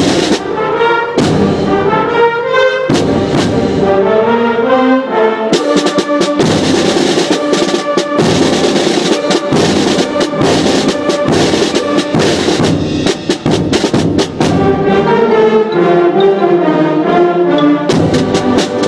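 Middle school concert band playing loudly: brass and woodwinds over frequent drum and percussion strikes. Quick running melodic figures sound in the first few seconds and again near the end, with a fuller full-band passage in between.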